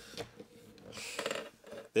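Paper rustling and a couple of light taps as a disc-bound notebook is handled and its page smoothed flat.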